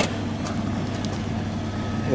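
Power sliding door of a 2006 Dodge Grand Caravan opening under its motor: a sharp click as the latch releases, then a steady hum as the door slides back.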